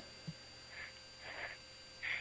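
Faint steady electrical hum on a recorded telephone line, with a couple of very faint soft sounds in the background.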